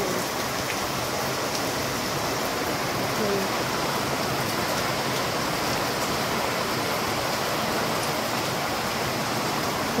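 Steady rain falling on a wet concrete yard, an even hiss that does not let up.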